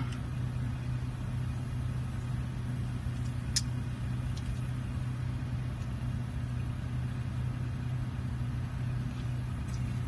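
A steady low mechanical hum, like an engine or compressor running, with one sharp click about three and a half seconds in.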